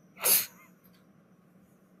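One short, sharp burst of breath from a person, about a quarter second in, loud against the faint background.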